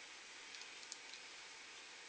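Very quiet room hiss, with a few faint ticks about half a second to one second in, from fingers handling a small plastic toy dog figure.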